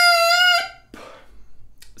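A Jones medium-soft oboe reed crowed on its own, off the instrument: a bright, buzzy held tone rich in overtones that cuts off about half a second in. The crow sits a little low in pitch, but the reed responds very easily.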